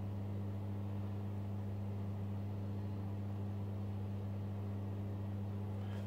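A steady low hum with a faint hiss, unchanging throughout, with no other sound.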